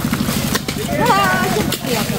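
People talking over a fast, even, low pulsing that fades out about a second and a half in.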